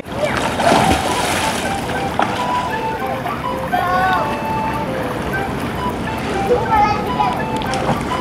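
Swimming-pool ambience: a steady wash of water noise with light splashing, and children's voices calling out now and then across the water.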